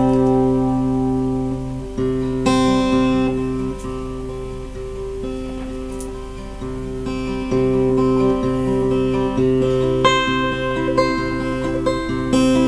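Steel-string acoustic guitar picking an instrumental intro, chords ringing out and changing every couple of seconds.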